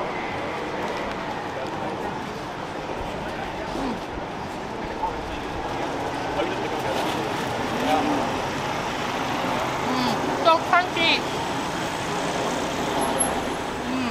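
City street ambience: steady road traffic, with snatches of passersby's voices in the background.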